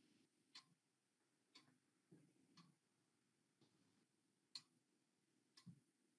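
Near silence with faint, evenly spaced ticks, about one a second.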